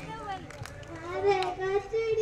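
A young girl starts singing into a microphone about a second in, unaccompanied, her voice rising into a long held note.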